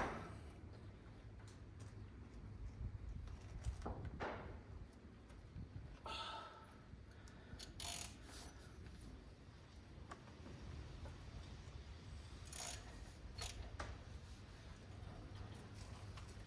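Faint, scattered clicks and clunks of metal parts and tools being handled in a seized engine's bay, over a low steady rumble.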